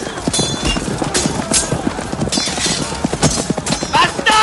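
Battle-scene sound from a film: a dense clatter of horse hooves and weapon strikes, with a few brief metallic rings from clashing blades.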